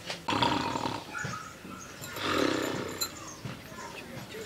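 A man snoring loudly in his sleep: two long, rough snores about two seconds apart.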